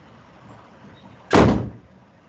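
A single short, loud burst of noise about one and a half seconds in, sharp at the start and fading within half a second.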